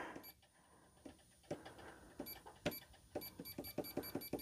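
Bernina sewing machine's touch controls beeping faintly, one short beep and then a quick run of several beeps a second in the second half, with soft finger taps: the machine's light brightness being turned down, which will go no lower than 50%.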